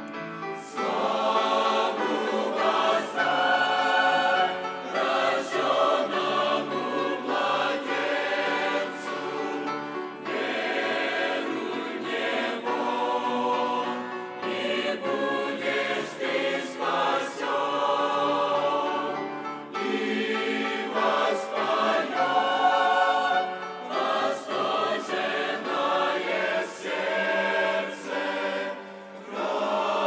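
Large mixed choir of men's and women's voices singing a sacred song in parts, phrase by phrase with short breaks for breath.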